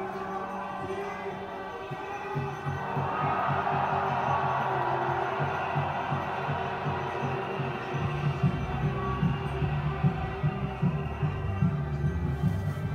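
Amplified music from a street rally's sound system, heard from a distance, with a low thumping beat that comes in after about two seconds and grows louder about eight seconds in.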